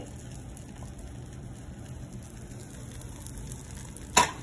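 Steady sizzling of food frying in a pan.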